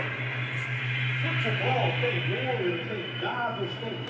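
Indistinct background speech over a steady low hum; the voice comes and goes from about a second in to near the end.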